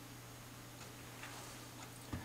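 Quiet room tone: a faint steady low hum with a few soft, scattered ticks.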